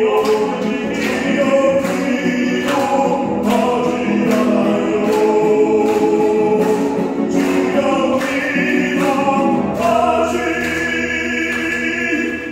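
Catholic worship song sung to a strummed acoustic guitar, with several voices together on long held notes.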